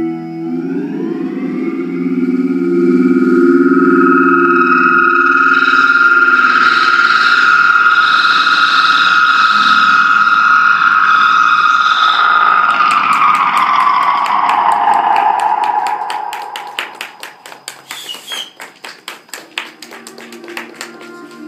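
Effects-drenched electric guitar drone: held distorted tones slide up in pitch in the first second, sustain, then slide down and fade out about three-quarters of the way through. A fast, even clicking stutter, about three or four clicks a second, takes over near the end.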